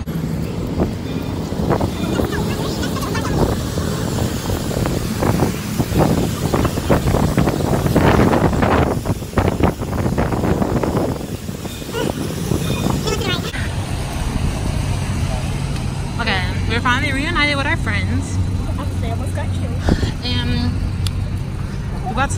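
Wet city street at night: car traffic with tyre hiss on the rain-soaked road and gusty wind buffeting the microphone, then a steady low engine hum from about halfway through, with voices near the end.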